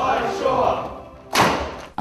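Group of voices shouting slogans, dying away over the first second, then a single loud thud about one and a half seconds in, ringing on in the large hall.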